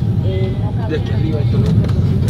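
Steady low rumble inside an airliner cabin just after landing, with faint talking in the background.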